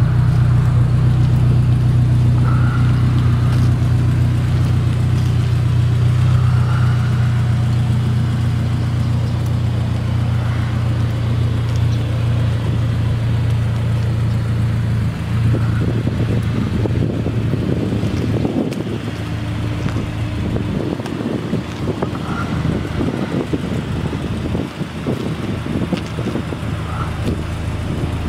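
Honda S2000's 2.0-litre four-cylinder idling steadily through a Berk high-flow cat and Invidia N1 cat-back exhaust, a loud, even low drone with no revving. From about halfway a crackly rustle on the microphone rides over it.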